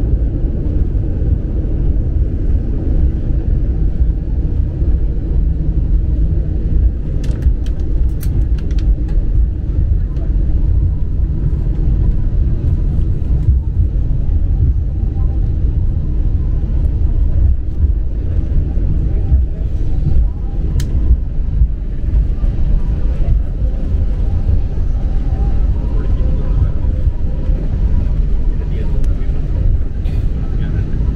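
Steady low rumble in the cabin of an Airbus A320-family airliner rolling out along the runway after landing and slowing toward the taxiway, with a few light clicks.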